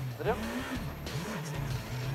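Škoda Fabia S2000 rally car's engine heard onboard as the car drives on, its note rising and falling as the revs change.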